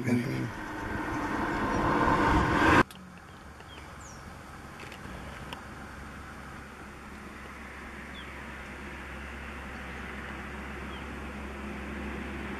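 Rushing sound of a motor vehicle approaching, growing steadily louder, then cut off abruptly about three seconds in. After that, a steady low hum and hiss with a few faint, short high chirps.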